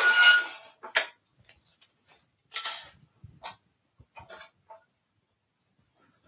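Metal clanks and clinks as a lathe tool rest is set in place, with the lathe switched off: a ringing clank at the start, a click about a second in, another ringing clank about two and a half seconds in, then a few light taps.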